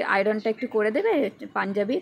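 Only speech: a woman talking in Bengali.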